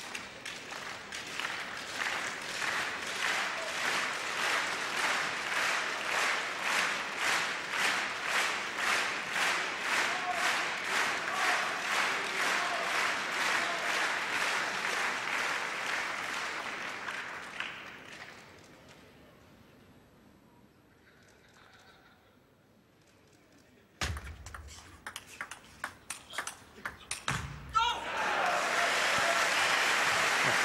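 Arena crowd clapping in unison, a steady rhythmic clap about two to three times a second, fading out after about 18 seconds. After a hushed pause, the sharp clicks of a table tennis rally, ball on bats and table, start about six seconds before the end, and crowd noise rises as the rally goes on.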